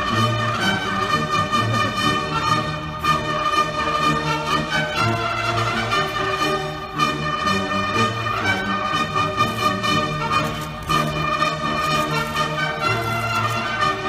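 Military brass band playing a slow ceremonial piece in sustained chords over a steady low bass line.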